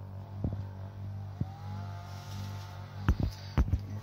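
Small AC motor of a homemade magnetic stirrer running at its maximum speed setting with a steady low hum. A few sharp knocks stand out, the loudest two near the end.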